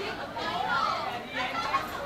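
Indistinct chatter of several people talking at once in a room.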